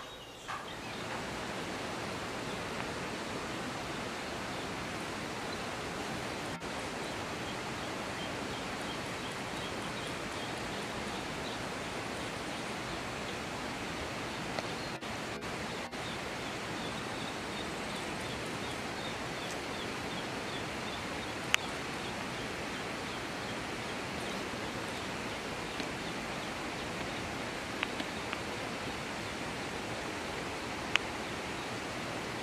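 Steady, even rushing noise that comes in about a second in and holds constant. Partway through, a faint run of repeated high chirps sits on top of it, and a few sharp clicks come near the end.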